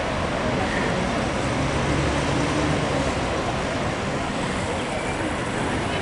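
Busy street traffic with buses and cars running, a steady low engine drone that swells slightly a couple of seconds in; faint voices.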